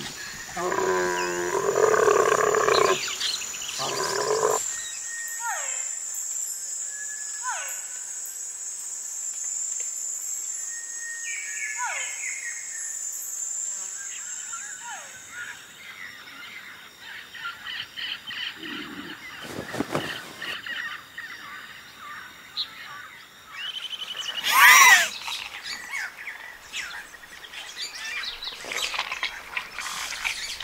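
Animated-film soundtrack of music and sound effects: a wavering pitched sound for the first few seconds, then a steady high whine with several short falling whistles, a sharp hit about twenty seconds in and a loud pitched burst about twenty-five seconds in.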